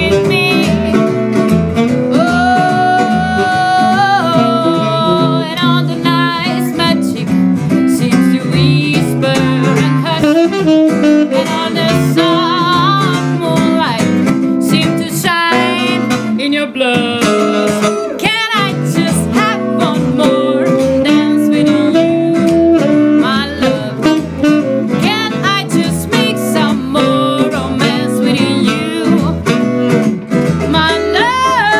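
Live acoustic blues-jazz trio playing: an acoustic guitar strummed and picked as accompaniment under a saxophone carrying the melody, with held, wavering notes.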